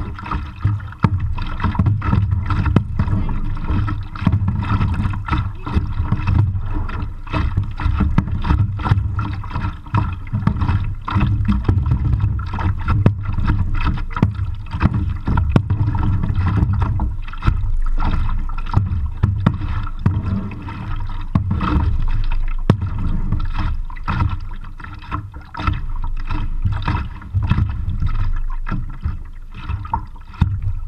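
Kayak paddling heard through a chest-mounted camera's waterproof case: a muffled, rumbling wash of water and movement with frequent knocks and splashes from the paddle strokes against the plastic hull and the water.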